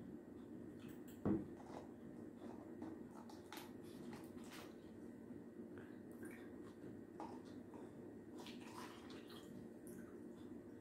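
Water poured from a plastic pitcher into plastic cups, faint trickling and dribbling as the cups fill one after another. There is a sharp knock on the table about a second in.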